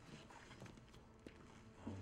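Near silence with a few faint, scattered knocks, about a second in and near the end.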